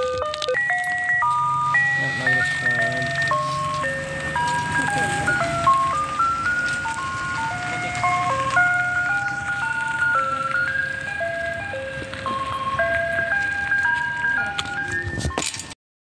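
Ice cream truck's jingle playing from its loudspeaker: a simple tune of single chime-like electronic notes stepping up and down, with a low hum underneath for the first few seconds. It cuts off just before the end.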